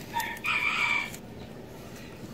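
A rooster crowing once, a single call about a second long near the start.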